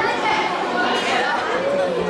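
Crowd chatter: many overlapping voices of spectators and children talking at once, none standing out.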